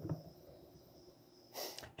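Quiet room with a faint steady high-pitched tone. Near the end comes one short, sharp intake of breath.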